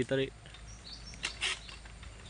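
Faint, brief bird chirps, then a few short sharp crackles a little after a second in.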